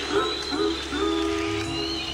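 A live rock band playing an instrumental passage, heard through a concert audience recording. A few short pitched notes are followed by a longer held note about a second in.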